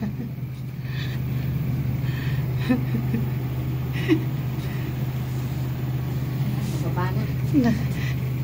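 Steady low hum of a glass-walled passenger elevator descending, with no change in pitch or level.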